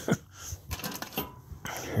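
A few light, separate clicks and taps of small parts being handled inside a steel safe, with a short laugh near the end.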